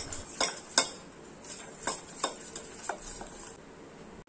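Steel spoon stirring butter and powdered sugar in a stainless steel bowl, with about five sharp clinks at irregular intervals as the spoon strikes the bowl.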